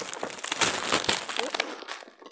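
Glossy gift-wrapping paper being crumpled and pulled off a box by hand: an irregular run of crinkling crackles.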